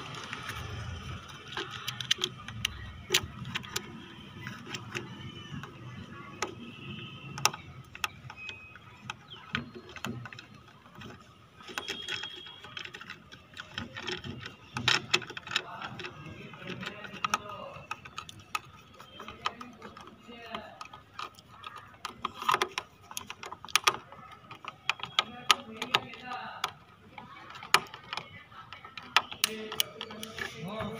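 Small hand screwdriver turning screws into the plastic mount of a Tata Nano door mirror: scattered, irregular clicks and ticks of metal on plastic.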